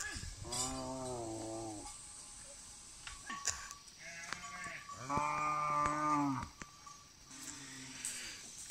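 Cattle mooing: two long, steady moos of about a second and a half each, the second about five seconds in.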